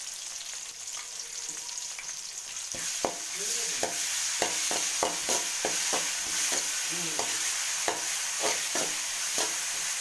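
Shallots and green chillies sizzling in hot oil in a wok-style pan. The sizzle grows louder about three seconds in, and a steel spoon then stirs and scrapes against the pan two or three times a second.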